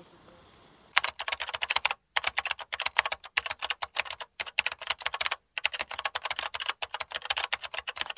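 Rapid keyboard typing: a quick run of key clicks starting about a second in, in several bursts separated by brief pauses.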